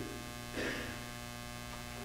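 Steady electrical mains hum in the sound system, a low buzz with even overtones, heard in a pause between spoken phrases.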